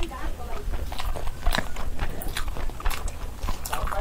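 A person chewing a mouthful of rice and curry close to the microphone, with irregular wet smacks and clicks.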